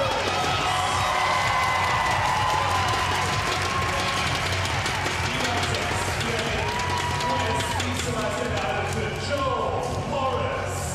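Arena music over the public-address system, with crowd noise and cheering from the stands during the athletes' introductions.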